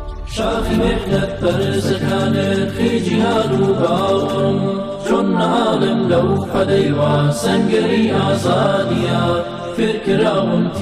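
Chanted vocal music, a nasheed-style song sung by layered voices, starting abruptly just after the beginning and going on loudly throughout.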